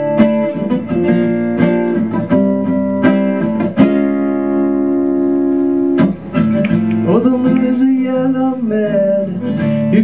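Guitar strumming chords in a live song, with one chord left ringing for about two seconds near the middle. A singing voice joins over the guitar from about seven seconds in.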